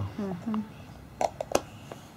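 Three or four sharp little clicks about a second in, from the lid of a small cream jar being twisted shut by hand.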